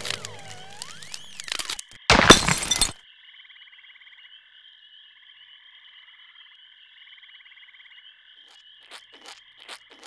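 Cartoon sound effects of a ceiling light fixture cracking loose: a crackling, then a loud crash about two seconds in as it comes down. Afterwards a faint, high, steady trill runs on, with a few sharp clicks near the end.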